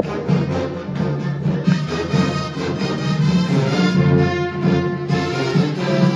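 Marching band playing: loud brass with sousaphones, over a steady rhythmic pulse.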